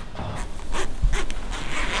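Zipper on the back of a stretch-fabric costume being pulled up in several short rasping tugs.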